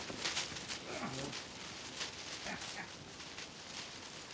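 Leaves and branches rustling with footsteps as someone pushes through dense forest undergrowth, with the loudest crackles in the first half second. Brief cry-like sounds come about a second in and again about halfway through.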